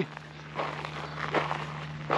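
Soft footsteps on dirt and gravel ground, a few light scuffs, over a steady low hum.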